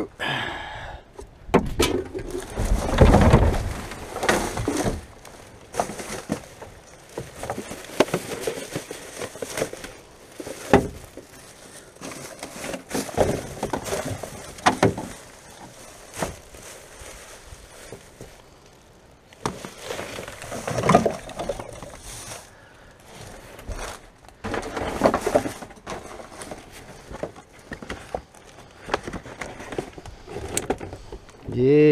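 Household rubbish being sorted by hand in a dumpster: plastic bags and wrappers rustling and crinkling, with plastic bottles and containers knocking against each other and the plastic wheelie bin. The handling comes in irregular bursts, busiest about three seconds in and again around twenty and twenty-five seconds.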